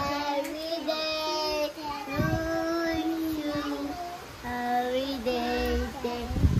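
A young child singing in long, drawn-out notes, with a short break about four seconds in.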